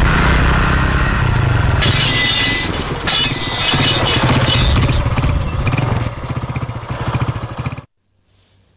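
Small commuter motorcycle engine running as the bike rides in, then settling to a slower, separate putter as it pulls up and stops. The sound cuts off suddenly near the end.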